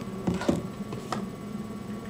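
Steady electrical hum under a few light clicks and knocks, about a third and half a second in and again just after a second, from hands handling an eyeshadow palette.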